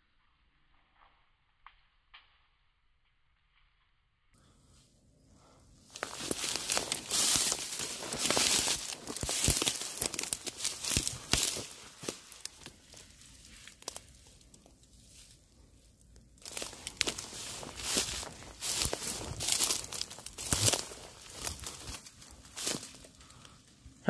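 Dry reed stalks crackling and rustling as someone pushes through a dense reed bed on foot. After a few seconds of near silence, the crackling comes in two long spells with a quieter stretch between them.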